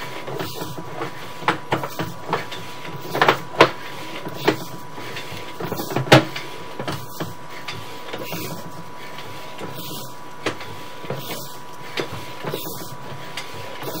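Sewer inspection camera being fed down an SDR sewer pipe: steady mechanical rattle from the push rod and reel, with a thin steady tone and irregular clicks and knocks as the camera head moves along the pipe, the loudest a few seconds in.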